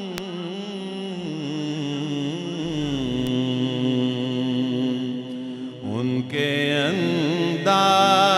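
A man reciting a naat, singing unhurried, ornamented lines into a microphone with long held notes that waver and slide in pitch. Near the end the voice grows louder and brighter.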